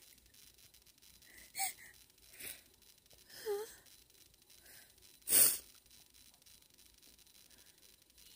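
A woman crying between words: a few short, shaky sobbing whimpers and breaths, with one loud, sharp intake of breath about five seconds in.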